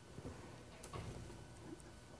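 A few faint clicks and rustles of a clear plastic nebulizer medicine cup and its top being handled.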